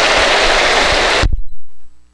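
Congregation applauding, dense and even, cut off abruptly about a second and a half in as the recording ends.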